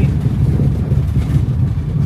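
Car driving along a gravel bush track, heard from inside the cabin: a steady low rumble of engine and tyres on the loose surface.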